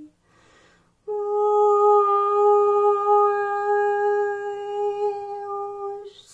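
A woman's voice toning in light language: a short breath, then about a second in, one long, steady sung note held for about five seconds.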